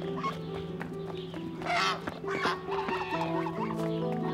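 Geese honking twice, about halfway through, short loud calls over a background music score of held notes.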